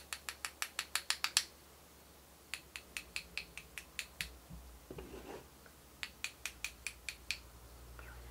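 Paintbrush rapped repeatedly against a metal palette knife to spatter acrylic paint. The taps come as quick sharp clicks in three runs of about a second and a half each.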